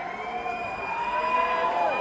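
Concert audience cheering and whooping, many voices holding and sliding long calls, growing louder.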